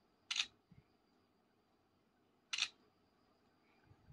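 Realme Narzo 50 smartphone's camera shutter sound, played twice about two seconds apart as two photos are taken.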